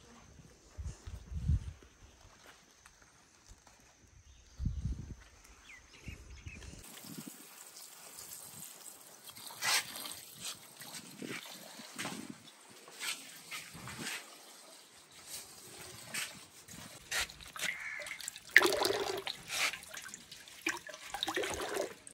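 Water splashing and dripping in a metal basin as leafy greens and a white radish are washed by hand, with irregular splashes and knocks against the basin, the loudest near the end. Before that come a couple of low thumps.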